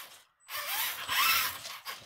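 Small RC steering servo whirring and grinding for about a second and a half, starting about half a second in, with short rising whines. The servo is broken, so it fails to steer the wheels.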